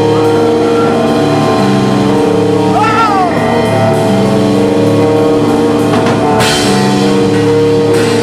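A death metal band playing live: a drum kit heard up close over distorted guitars and bass. A short squeal bends up and back down about three seconds in, and a cymbal crash comes about six and a half seconds in.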